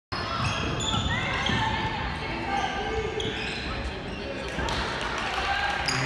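Basketball game sounds in a gymnasium: a basketball bouncing on the hardwood court among players' and spectators' shouts.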